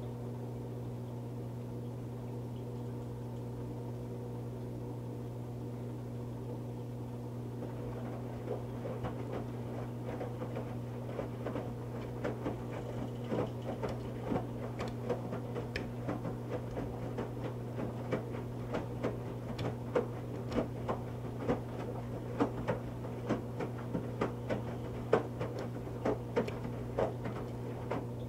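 Electrolux EFLS527UIW front-load washer running a wash with a steady low motor hum. After about eight seconds, irregular splashes and soft thuds of a wet moving blanket tumbling in water come in, growing more frequent and louder toward the end.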